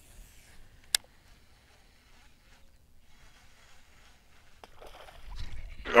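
Quiet open water during a lure retrieve, broken by a single sharp click about a second after the cast, typical of a fishing reel engaging. Near the end a rising rush of noise leads into a short "Oh" as a bass is hooked.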